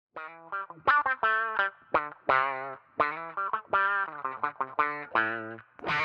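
Telecaster-style electric guitar played through effects pedals: a run of short, choppy single notes and chords with brief gaps between them.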